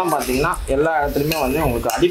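A metal spoon stirring and scraping food in a stainless steel kadai, with clinks of metal on metal, under a person talking.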